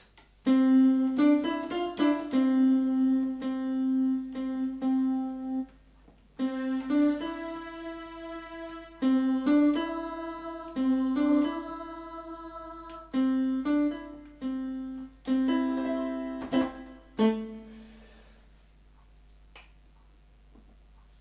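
Yamaha PSR-270 portable keyboard played in several short melodic phrases with its dual voice on, two voices sounding together on each note. The playing breaks off briefly a few times, and the last notes fade out near the end.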